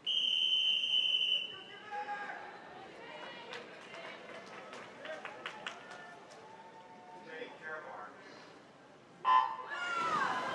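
A swim referee's whistle in one long blast, then voices echoing in an indoor pool hall. Near the end a short, loud electronic start signal sends the backstroke swimmers off the wall to begin the medley relay.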